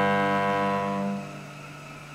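Cello holding a long bowed note that fades away a little over a second in, leaving a faint low ringing.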